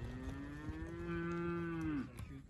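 A young cow mooing: one long call that rises slowly in pitch, then drops and breaks off at the end.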